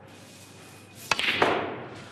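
Snooker cue tip striking the cue ball about a second in, then a louder knock about a third of a second later as the cue ball hits the object ball.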